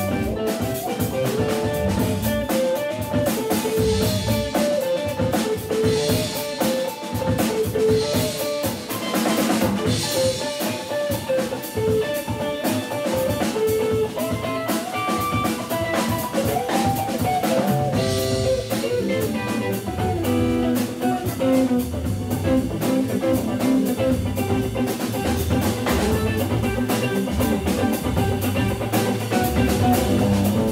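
A jazz-blues organ trio playing live: Hammond B3 organ, electric guitar and drum kit. A melodic line moves over the drums, and the low end fills out about two-thirds of the way through.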